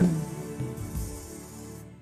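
Live worship band's music dying away at the end of a song: soft sustained instrument notes fading steadily quieter.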